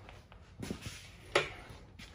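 Quiet shop room with two brief handling knocks, the second and louder about a second and a half in, as an aerosol can of WD-40 is picked up.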